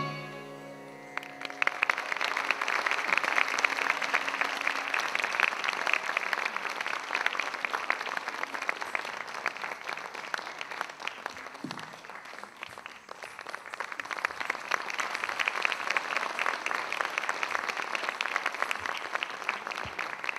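The last notes of the music die away in the first second, then an audience applauds steadily. The clapping thins a little about halfway through and picks up again.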